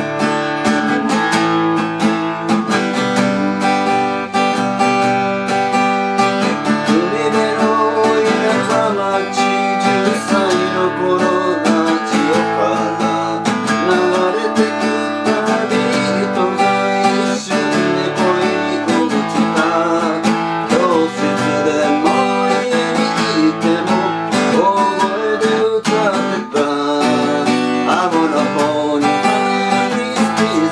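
Takamine cutaway steel-string acoustic guitar, strummed and picked in a steady rhythm as a song accompaniment.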